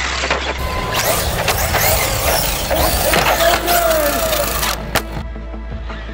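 Background music over an electric RC car's motor whine and tyre noise on asphalt, with a falling whine about three and a half seconds in and a sharp knock near the end.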